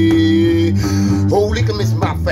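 A man singing over a strummed one-string acoustic guitar. A long held sung note ends about two-thirds of a second in, the guitar carries on under it, and the singing starts again near the end.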